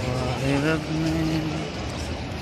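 A man's voice in the open, its pitch bending at first and then held on one long note for most of a second, over the steady murmur and street noise of a busy pedestrian plaza.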